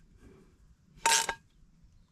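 A cooking pot with a freshly repaired handle being handled: one short scrape or clink about a second in, with little else but low background noise.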